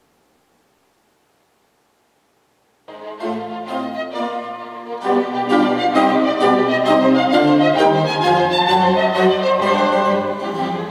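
Classical music with bowed strings from an FM stereo broadcast, playing through the Sony CMT-NEZ30 micro system's small speakers. It comes in about three seconds in after near silence and gets louder about two seconds later.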